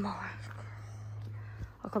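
A woman's breathy, whispered exhale after a fright, over a steady low hum, with a short click near the end.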